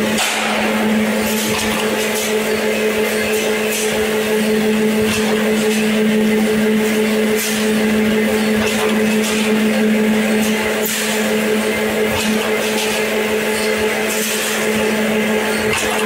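High-speed angle bead roll forming machine with follow shear running in production: a loud steady hum, with short sharp clicks every second or two.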